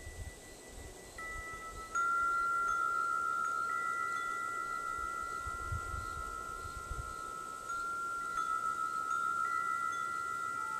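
Large metal-tube wind chime swinging in the breeze, its tubes struck several times and ringing with long sustained tones that overlap. The loudest strike comes about two seconds in.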